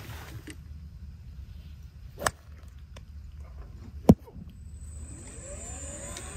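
A golf shot: the club strikes the ball with one sharp crack about four seconds in, the shot then called an intentional stinger. A fainter click comes about two seconds earlier, over a steady low rumble.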